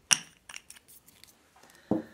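Small hard nail-stamping tools clicking as they are set down and handled on a tabletop: a sharp click just after the start, a few lighter ticks, then a dull knock near the end.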